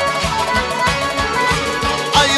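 Live band playing lively instrumental music, driven by a fast, steady drum beat of about five strokes a second under a reedy, accordion-like melody.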